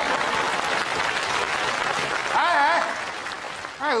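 Studio audience applauding steadily, thinning out and fading after about three seconds. A brief voice cuts through the clapping about two and a half seconds in.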